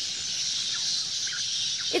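A large colony of bats in a cave, many squeaking at once in a dense, steady high-pitched chatter: very noisy.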